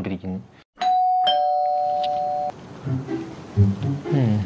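Electronic two-tone doorbell chime: a high note followed by a lower note, both ringing on together and then cutting off suddenly.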